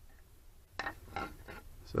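A few short handling knocks and scrapes as a spirit level is shifted and set against a car's rear suspension control arm, coming about a third of a second apart from just under a second in.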